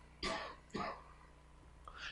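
Two faint, short throat-clearing sounds in the first second.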